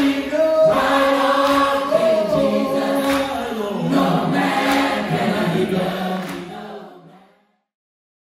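A choir singing long held notes, fading out about seven seconds in and ending in silence.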